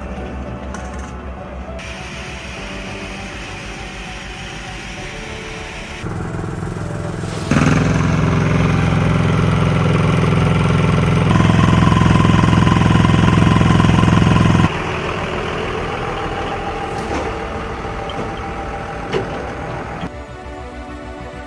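A steady engine drone mixed with background music. It steps louder about six and seven and a half seconds in, louder again a little past the middle, and drops back about fifteen seconds in.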